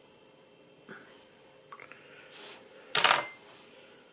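Faint handling sounds of fingers picking through a bundle of deer hair, with a short, louder noise about three seconds in.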